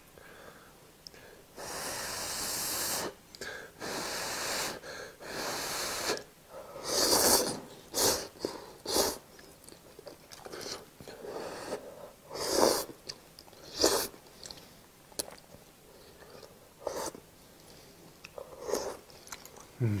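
Close-up eating sounds of food taken with chopsticks from a pot: three long slurps in the first few seconds, then a run of shorter, sharper slurps and chewing.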